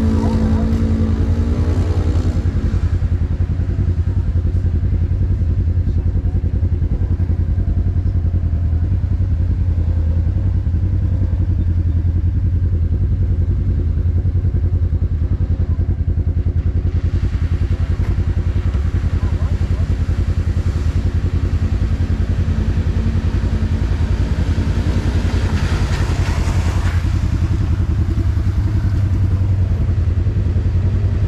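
Side-by-side UTV engine idling steadily with a low, even rumble. A rising engine note comes in briefly near the end.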